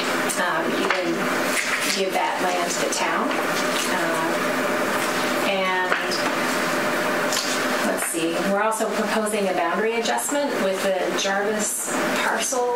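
Continuous speech: a woman talking steadily into a microphone in a small meeting room.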